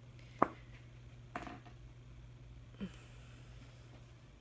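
Quiet handling of craft tools and supplies on a tabletop: one sharp click about half a second in, then two soft brief rustles, over a low steady hum.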